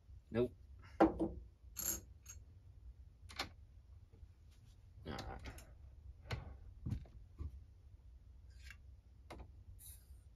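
Hornady AP progressive reloading press being worked by hand: about ten scattered metallic clicks and clunks as the ram is raised and the shell plate moves.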